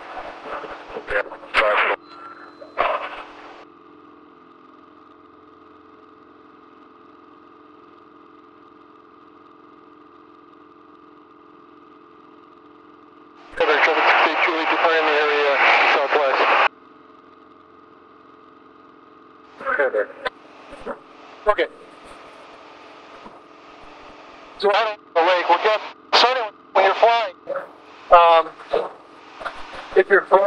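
Steady drone of a single-engine propeller plane's engine in a climb, heard through the headset intercom. Bursts of speech sit on top of it, including a radio transmission that starts and stops sharply.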